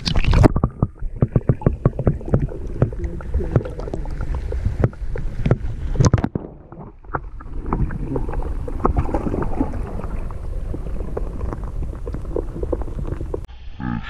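Muffled underwater sound from a camera microphone held below the surface as a largemouth bass is released, with many knocks and bumps against the camera in the first half. The sound opens up again, clear and bright, just before the end as the camera comes out of the water.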